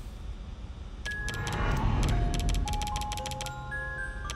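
Online slot game audio: background music with a run of quick clicks and short chime notes at changing pitches, starting about a second in, as the bet is raised step by step.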